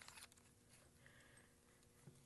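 Near silence: room tone, with a few faint clicks near the start from the mug attachment's power connector being screwed into the heat press.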